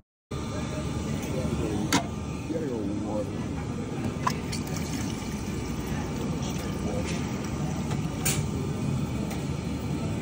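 Steady background noise with faint, indistinct voices, broken by a few sharp clicks about two, four and eight seconds in.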